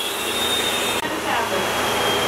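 Milking machine's vacuum hissing as air rushes in through teat cups that have fallen off the cow's udder, with a thin steady whistle over the rush.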